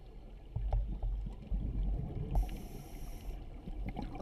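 Scuba regulator breathing heard underwater through a camera housing: low, muffled rumbling of exhaled bubbles, then a high hiss of the next inhalation about two and a half seconds in, lasting about a second.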